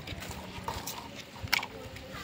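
A few sharp clicks from handheld bypass pruning shears being handled, the loudest about one and a half seconds in.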